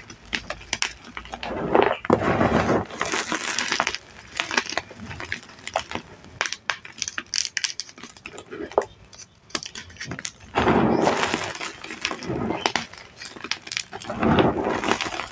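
Chunks of dyed, cornstarch-pasted (reformed) gym chalk crunching and crumbling as hands squeeze and rub them, with small pieces cracking and clicking against each other. Two longer, louder bursts of crushing come about two seconds in and again past the ten-second mark, with scattered sharp cracks between.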